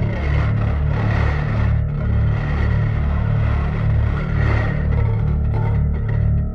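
Electric bass played with a strip of metal mesh threaded through its strings and drawn across them, giving a grainy scraping texture over low bass notes that pulse about twice a second.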